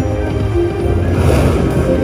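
Neptune slot machine's free-spin bonus music, a steady electronic tune, playing as the reels spin and stop, with a brief shimmering hiss about a second in.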